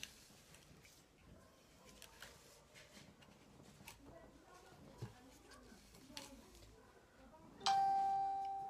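Faint tabletop handling noises with a few small clicks, then near the end a sudden bell-like ringing tone that fades out over a second or so.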